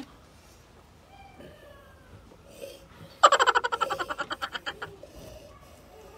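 A woman laughing: a burst of rapid, high-pitched laughter starts about three seconds in and fades out over about two seconds.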